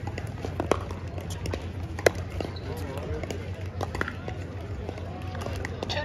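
Sharp pops of pickleball paddles hitting the ball, the loudest about two seconds in, over a low murmur of voices.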